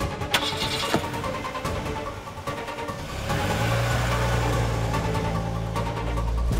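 Car engine running as the car pulls away, a steady low drone that comes in about three seconds in, under dramatic background music.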